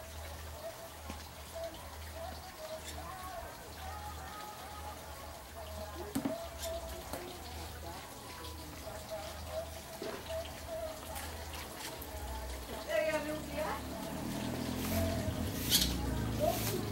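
Faint background chatter of people talking, with a low rumble underneath; voices grow clearer and louder near the end.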